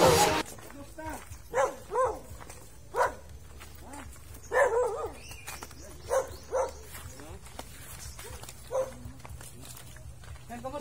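A dog barking in single short barks, about eight of them at irregular gaps, after background music cuts off right at the start.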